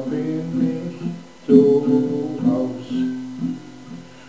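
Acoustic guitar strumming chords in a short instrumental passage with no singing; a freshly struck chord rings out strongly about one and a half seconds in.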